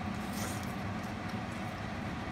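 Steady low background hum, with one faint click about half a second in.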